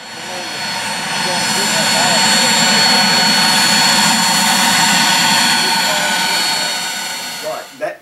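Cirrus SF50 Vision Jet's single turbofan engine, a rushing jet noise with a steady high-pitched whine, building over the first two seconds and fading away near the end as the jet moves along the runway.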